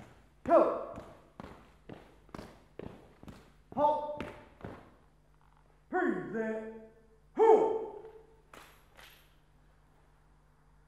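Honor guard marching footsteps, about two steps a second, stop about halfway through. Short, loud, falling drill commands are called out four times over them.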